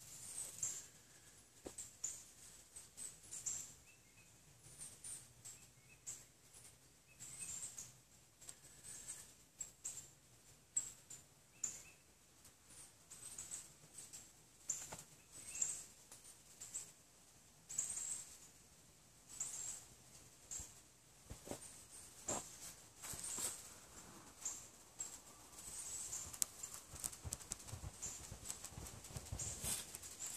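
Faint, short, high-pitched chirps of small birds, repeating every second or two, with scattered light crackles of dry pine straw being handled.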